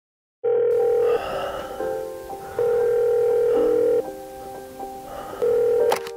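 Telephone tones heard on a call: after a brief silence, a steady beep sounds three times, with softer tones and quiet music underneath, as the call rings through before it is answered.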